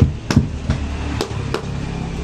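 A few sharp clicks and knocks, three close together near the start and two more past the middle, over a low steady hum.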